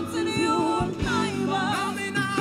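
Live gospel worship music: voices singing a held, wavering melody over a band, with an acoustic drum kit playing along.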